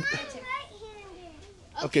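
Children's voices: a high child's voice calls out and trails off over the first second, then a voice says "okay" near the end.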